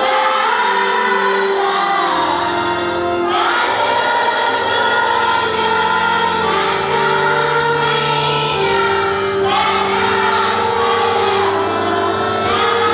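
A church choir singing a hymn in long held notes over a steady instrumental accompaniment.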